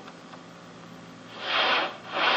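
A cartoon soundtrack playing from a computer, picked up off the screen: a faint steady hiss, then near the end a short breathy rush of noise, a comic sound effect.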